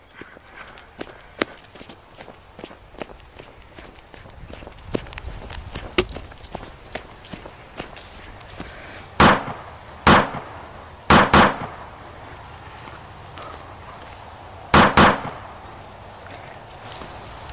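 Footsteps and rustling through tall grass with small ticks and thumps while running. Then come six loud, sharp gunshot-like bangs: one, another about a second later, a quick pair, and a last quick pair near the end. They are the shots of a pretend shoot-out.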